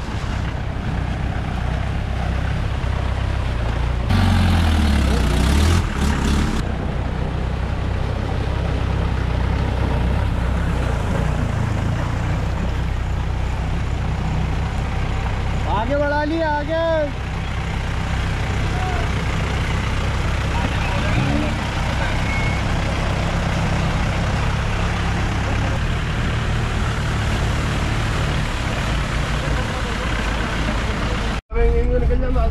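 Old jeep engines running as the vehicles drive through a shallow flooded stream crossing, with a louder rev about four seconds in. A voice calls out briefly about halfway through.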